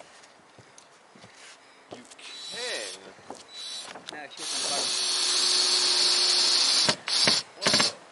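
Cordless drill driving a screw into OSB roof sheathing: one steady run of about two and a half seconds, then two short bursts near the end as the screw is seated.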